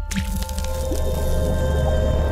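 Intro logo sting of music and sound effects: a sudden burst right at the start, over a steady deep bass drone and several held tones.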